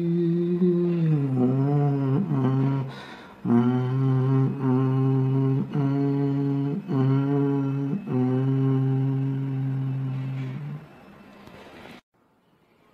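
A man humming a slow, low melody a cappella in long held notes. The pitch wavers between about one and two and a half seconds in. The notes are broken by brief pauses, and the humming stops shortly before the end.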